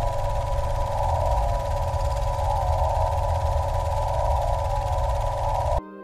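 Steady droning soundtrack noise: a deep rumble under a dense mid-pitched hum, with a hiss above. It cuts off abruptly near the end.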